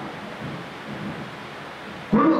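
Steady, even hiss of background noise, without any distinct event, picked up through a headset microphone.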